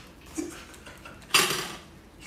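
Handling noise from a small whiteboard and a marker: a faint click about half a second in, then a louder, sharp clatter about two-thirds of the way through.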